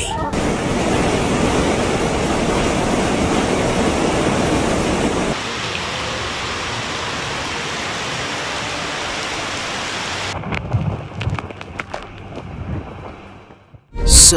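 Loud rushing roar, deepest and heaviest for the first five seconds, then a steadier hiss, then a run of sharp knocks and crackles that fades out near the end.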